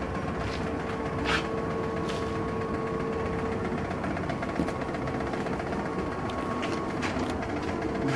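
A steady machine hum runs throughout, with a couple of light clicks in the first two seconds; a fainter, higher tone within it drops out about seven seconds in.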